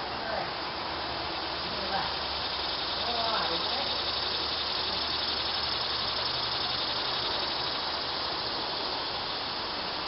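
Steady, high-pitched buzzing chorus of insects in the summer trees, swelling slightly in the middle.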